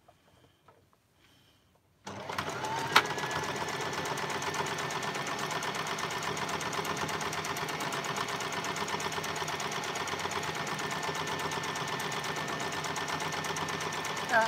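Domestic electric sewing machine starting up about two seconds in and running steadily at a fast, even stitch rhythm, sewing the underarm seam of a sleeve. There is a single sharp click about a second after it starts.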